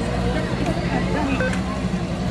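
ATM keypad beeping once, a short high tone about one and a half seconds in, as a menu choice is pressed, over a steady low hum and faint voices in the background.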